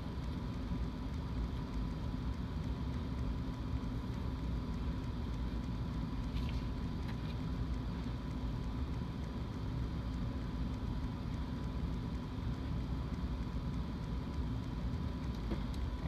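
Steady low background hum with a thin steady whine, and a few faint snips of small scissors cutting a thin sheet about six and a half seconds in.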